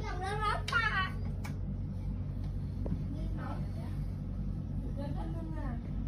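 A SMARTHOME AP-180 air purifier running with a steady low hum. A voice speaks over it, loudest in the first second and again briefly around the middle and near the end.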